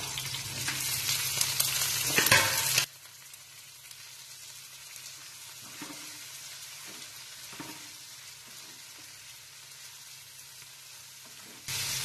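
Sliced onions sizzling as they go into hot oil in a frying pan. The loud sizzle drops suddenly about three seconds in to a quieter frying hiss, with a few faint scrapes of a steel ladle stirring them.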